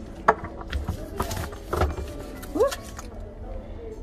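Signature coated-canvas bag with leather trim being handled and set down: a sharp click of its hardware, then rustling and soft knocks over the next second or two.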